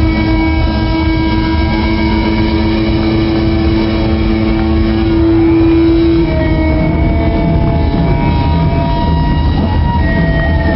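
Live rock band playing loudly, a long held note sounding over the drums and bass until it stops about six seconds in.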